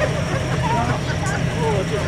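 Fire engine pump running steadily, driving water through the hoses, with faint voices in the background.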